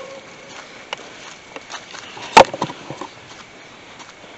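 Quiet steps along a leaf-littered forest trail, with light scattered ticks and one sharp knock or snap about two and a half seconds in.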